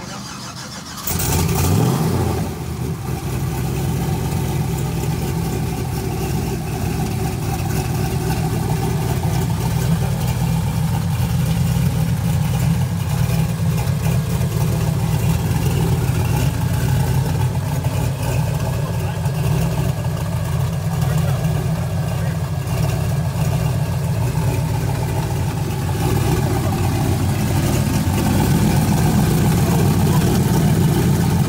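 Turbocharged GMC Sierra pickup engine starting about a second in, flaring briefly and then settling into a steady idle.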